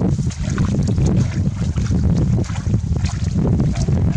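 Wind buffeting the microphone, a loud steady low rumble, with scattered light rustling as a mesh hand net is dragged through grass and shallow water.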